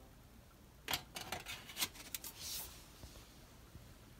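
A few sharp metallic clicks and knocks, then a short scrape, as the sheet-metal chimney pipe is handled and settles on the heater's base.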